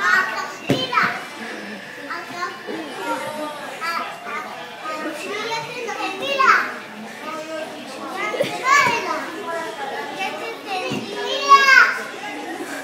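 Two young children talking back and forth in high-pitched voices, with several louder, rising outbursts.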